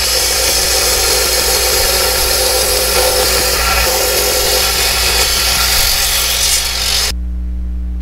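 Small wet saw slicing through a piece of rough opal, a steady grinding hiss as the stone is fed into the blade. About seven seconds in the cut ends abruptly and only the saw's motor hum is left.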